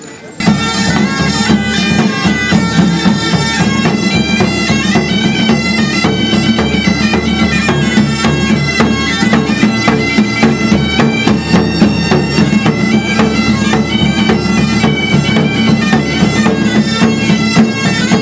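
Several medieval-style bagpipes playing a tune together over a steady low drone, starting suddenly about half a second in.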